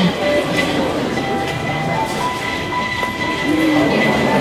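Honda ASIMO humanoid robot moving and stepping on a hard floor: a steady mechanical running noise with faint ticks of footfalls, and a few faint steady tones of music underneath.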